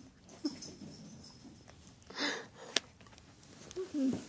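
A short breathy wheeze from one of the pets about two seconds in, among a few small clicks and brief low sounds.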